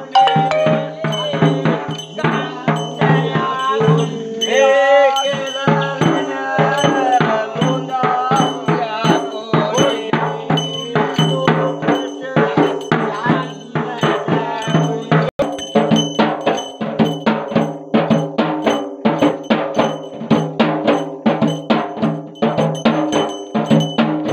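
Ritual drumming on a double-headed Sri Lankan drum (yak bera) beaten with a stick, a fast, unbroken rhythm of sharp strokes with metallic jingling percussion. A voice chants over it in the first half.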